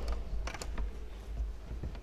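Low steady hum with a few light clicks about half a second in.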